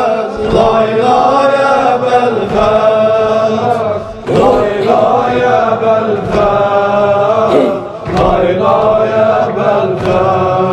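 A male voice chanting a mərsiyyə, a Shia mourning elegy, in long drawn-out phrases with wavering, bending pitch. It breaks briefly for breath about four and eight seconds in.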